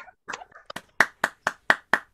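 A person clapping hands, picked up by a video-call microphone: a quick run of about nine claps, about four a second, the claps sharper and louder from about a second in.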